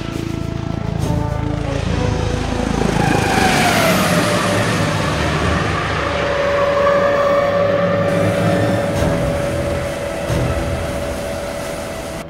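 Military helicopter flight sound mixed with a film music score. A rushing swell builds about three seconds in with a falling tone, then a steady tone and rushing noise hold.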